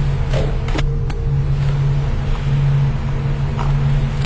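A loud, steady low hum runs throughout. Over it come a few soft knocks in the first second or so, which fit footsteps on stairs.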